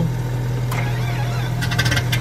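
Light twin piston-engine airplane heard from the cockpit: one engine runs with a steady low drone while the second engine is started. Rapid regular firing clicks set in near the end as the second engine catches.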